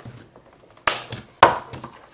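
Two sharp plastic clicks about half a second apart, the second the louder, then a few lighter clicks: the side latches of a plastic toy display-and-carry case being snapped shut to lock it.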